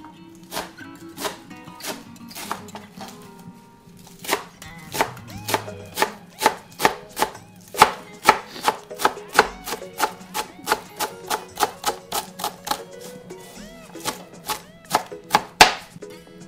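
Kitchen knife chopping fresh greens and red bell pepper on a plastic cutting board: sharp knocks, a few spaced ones at first, then a steady run of about three a second from about four seconds in.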